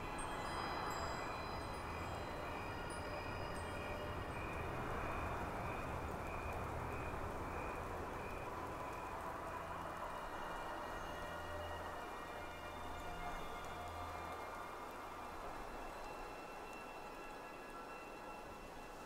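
Night ambience of soft wind with gentle swells. High chime tones ring and fade above it, over a low soft drone that thins out near the end.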